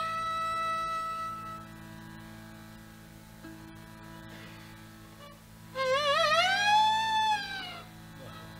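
Hindustani classical violin in a slow, voice-like phrase. A held note fades out about a second and a half in, leaving a steady low drone. Near six seconds in comes a loud phrase that slides up with quick wavering ornaments and curves back down.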